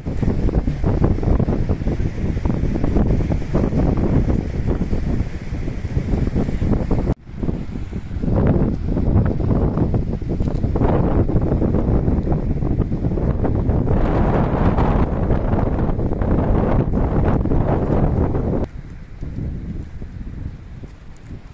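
Strong sea wind buffeting the phone microphone in a heavy, uneven rumble, over surf breaking on the shore. The sound breaks off for an instant about a third of the way through and eases near the end.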